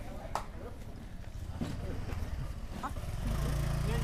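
An engine idling with a steady low hum that grows louder in the last second, with faint voices in the background.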